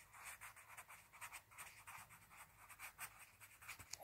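Faint scratching of a pencil writing a word by hand on a book page, in many short strokes.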